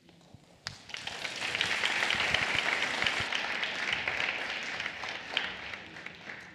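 Audience applauding: it starts about a second in, swells quickly to a full round of clapping, and begins to fade near the end.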